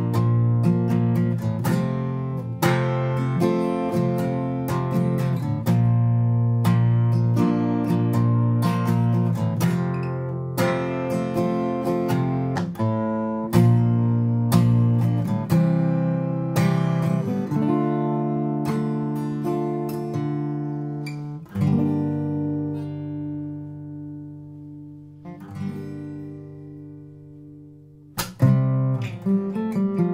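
Steel-string acoustic guitar strummed through a chord progression of B-flat and F major chords, the chords struck in a steady rhythm. About two-thirds of the way through, a chord is struck once and left to ring out and fade, and a few more strums come near the end.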